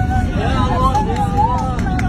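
Many frightened passengers' voices overlapping at once over the steady low rumble of an airliner cabin, the passengers braced for an emergency.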